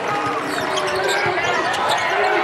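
Basketball dribbled on a hardwood court, with several sharp bounces in the second half, under arena crowd noise and voices.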